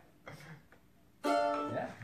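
A plucked string instrument: one chord struck sharply a little over a second in and left ringing, after a near-quiet pause.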